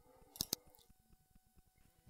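Near silence broken by two short clicks close together about half a second in.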